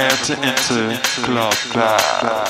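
Electronic dance music in a DJ-mix breakdown with the kick drum and bass dropped out. What is left is steady high metallic hi-hat ticks and a pitched, vocal-like line that wavers up and down.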